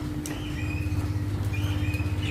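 Eating sounds: fingers mixing rice and curry on a plate while chewing, heard as scattered sharp clicks over a steady low hum.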